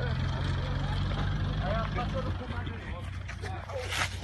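A vehicle engine idling with a steady low hum, under the scattered voices of a crowd; the hum thins out a little past halfway.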